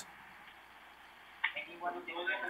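Faint telephone-line hiss, then about one and a half seconds in a click and a man's voice starting to speak over the phone line, thin and cut off in the highs.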